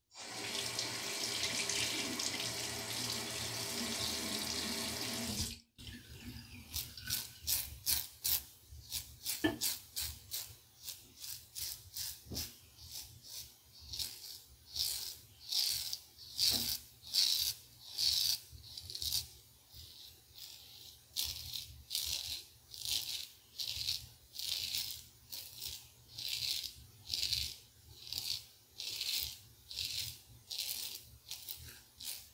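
Bathroom tap running for about five seconds, then shut off sharply. It is followed by a steady series of short, scratchy strokes, one or two a second: a Merkur 34C safety razor with a Voskhod blade scraping lather and two days' stubble.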